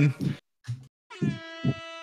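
A held, buzzy horn-like note coming in about a second in over the voice call, lasting about a second and fading away. It is another caller's unmuted noise disrupting the call, the kind that has the host calling for people to be muted.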